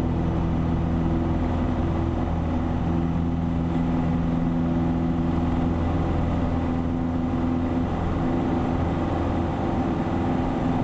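Piper Warrior's four-cylinder Lycoming engine and propeller running steadily at full power on the takeoff roll.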